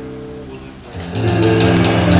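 Small jazz combo playing live: a held guitar and bass chord rings and fades, then about a second in the band comes back in with new guitar and bass notes and sharp percussion hits.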